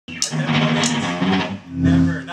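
Band music with electric guitar and bass guitar, starting abruptly, with two sharp hits in the first second and a held low note near the end.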